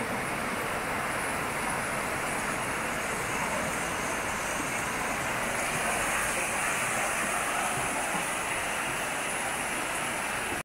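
Steady rushing noise of flowing river water.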